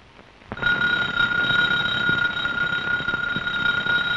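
Electric doorbell ringing in one long continuous ring of nearly four seconds, a steady tone over a rattling buzz, starting about half a second in and cutting off at the end: someone is at the door.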